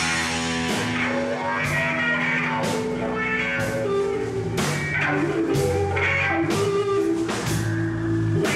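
Live band playing: electric guitar over a drum kit keeping a steady beat of about one hit a second.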